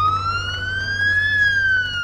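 Smartphone emergency-activation alert of the Intrepid Response app: one siren-like wail that rises steadily in pitch, peaks a little past halfway and then begins to fall. It signals an incoming activation request, a call-out to an incident.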